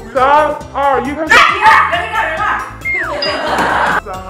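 Several boys' excited voices, loudest with shouting about one and a half seconds in, over background music. About three seconds in, a quick falling whistle and a short high ding.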